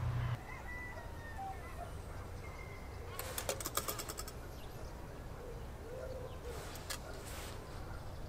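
Faint outdoor ambience with thin, distant bird calls, and a quick run of small clicks about three seconds in.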